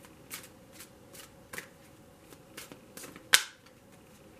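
A deck of oracle cards being shuffled by hand, the cards slapping together in a string of short, soft snaps. One sharp, much louder snap comes near the end.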